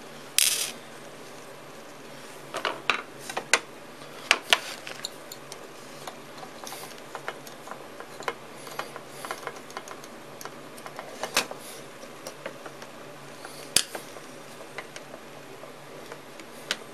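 Long threaded metal bolts and small hardware clicking and clinking as they are handled and fitted through a toggle-switch circuit board: irregular sharp ticks, a few in quick clusters, with a short scrape about half a second in.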